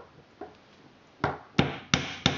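Claw hammer tapping an extra plastic peg into a plastic round knitting loom: a couple of faint clicks, then three quick taps in the second half, about a third of a second apart.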